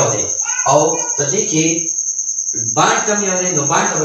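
A man talking in a lecture, pausing briefly near the middle. Behind his voice runs a continuous high-pitched pulsing trill that does not change.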